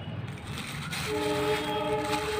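A horn begins sounding a steady chord of several tones about halfway through and holds it.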